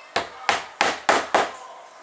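Small ball-pein hammer tapping a 5 mm wooden dowel axle into an MDF wheel: five sharp taps, about three a second.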